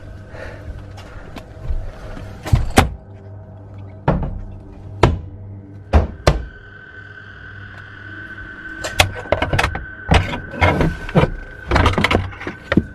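Irregular sharp knocks and thuds: a few spaced out in the first half, then a quicker run of them in the last few seconds, over a steady low hum and a faint high whine.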